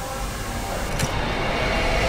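Channel logo sting sound effect: a rushing noise swell that builds steadily louder, with a sharp glitchy hit about a second in.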